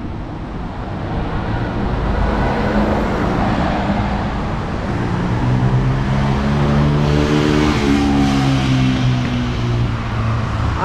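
A car driving past close by on the street: tyre and engine noise builds over the first seconds, the engine's hum is loudest in the second half, and its pitch drops slightly near the end as it goes by.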